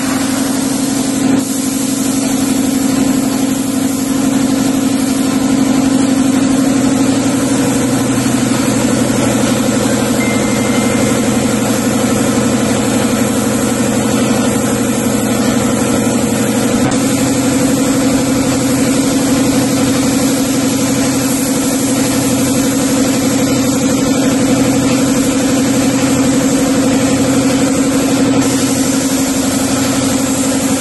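Shop air compressor running with a steady hum under the continuous hiss of a gravity-feed spray gun spraying paint.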